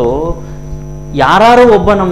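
A man's voice over a steady electrical mains hum: a few syllables, a short pause, then one long, loud drawn-out syllable whose pitch rises and falls, starting a little past halfway.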